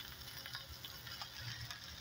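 Faint sizzling of ribs cooking over a charcoal grill, with a few small scattered crackles.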